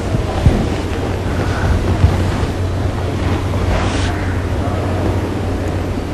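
Steady hiss with a low hum underneath.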